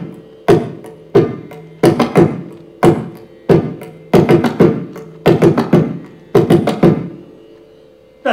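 Mridangam played solo: single strokes and quick clusters of two or three strokes every half second to a second, each with a pitched ring that dies away. The last cluster, about seven seconds in, is left to ring out.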